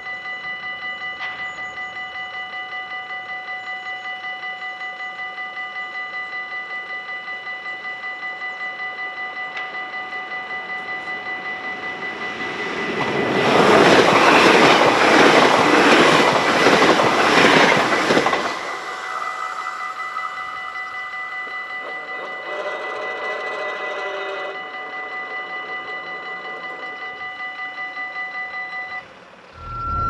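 Level-crossing warning bells ringing in rapid, steady strikes while a double-deck electric passenger train rushes through the crossing for about six seconds from roughly twelve seconds in; the train is the loudest part. The bells keep ringing after the train has passed and stop just before the end.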